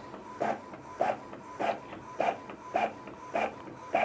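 Epson L3250 ink-tank inkjet printer printing a page: a short mechanical burst repeats evenly a little under twice a second as the print head sweeps and the paper advances, over a faint steady whine.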